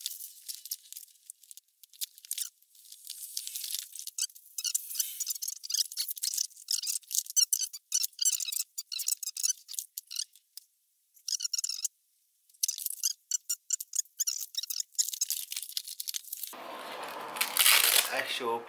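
Plastic bag and packaging crinkling and rustling as a PC power supply is unboxed: irregular crackles that are all high and thin, with a brief pause about two-thirds of the way through.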